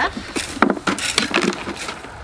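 A rake scraping hay and dirt across packed ground and knocking against a long-handled dustpan, in a run of short scrapes and clacks as light debris is flicked into the pan.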